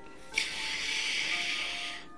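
Quiet background music with steady held notes, joined about a third of a second in by a steady hiss that stops suddenly near the end.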